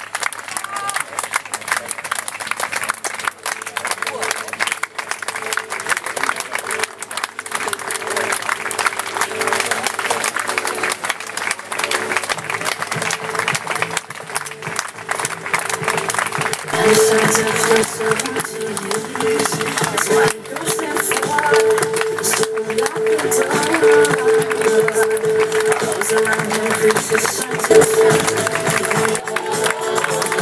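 Spectators clapping steadily for passing marathon runners, with music playing in the background that grows louder a little past halfway.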